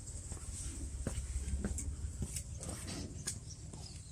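Quiet footsteps on concrete and phone handling while walking: a few faint, irregular taps over a low steady rumble.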